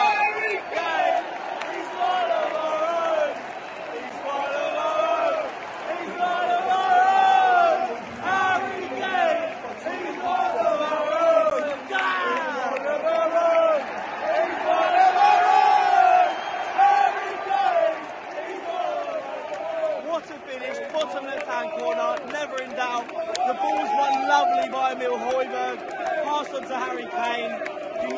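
Football stadium crowd chanting and singing together in celebration of a goal, in rising and falling sung phrases. Fans right by the microphone are shouting along.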